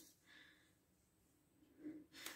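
Near silence: room tone, with a brief faint sound near the end.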